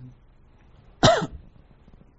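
A single short cough about a second in, with faint room tone around it.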